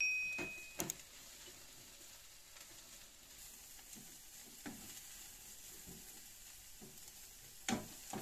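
Chopped green herbs sizzling as they fry in a pan on a gas burner, with a spatula stirring and scraping against the pan every few seconds; the loudest scrape comes near the end.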